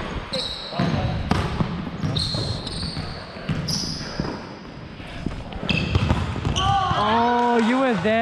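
Indoor volleyball rally on a hardwood court: sneakers squeaking sharply several times, with ball contacts and footfalls knocking and echoing in a large hall. A player's voice carries a long drawn-out call near the end.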